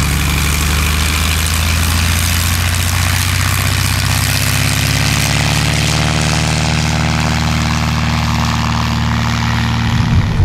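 Single-engine propeller tow plane running at takeoff power as the aerotow launch begins: a loud, steady engine-and-propeller drone, its tone wavering slightly about midway.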